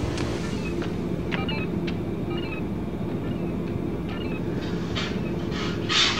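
A low, steady rumbling drone with a faint hum, broken by a few scattered clicks and, near the end, short bursts of hiss.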